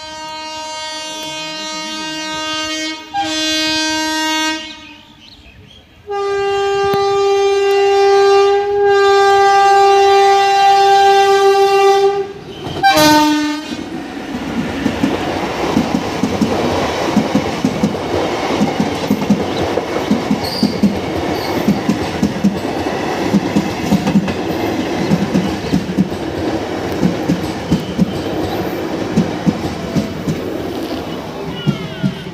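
Electric locomotive's horn sounding as a WAP-4-hauled passenger train approaches: a first long blast of about four seconds, then a louder, higher-pitched one of about six seconds, and a short final toot. Then the coaches go past with a steady, rhythmic clickety-clack of wheels over the rail joints.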